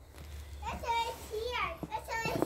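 A young child's high-pitched voice calling out in wordless, rising and falling cries, starting a little under a second in.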